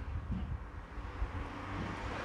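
A low, uneven background rumble under a faint hiss.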